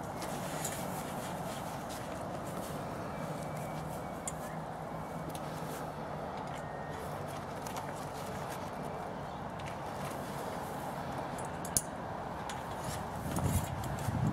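Steady outdoor background noise with a few light clicks and knocks from awning poles being handled and fitted into the canvas; the sharpest click comes about twelve seconds in.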